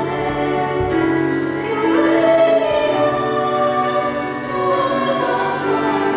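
Female vocal trio singing in harmony, accompanied by violin and electric piano, with long held notes.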